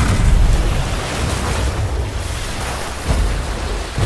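A steady rushing noise over a deep rumble, loudest right at the start and then settling to an even level.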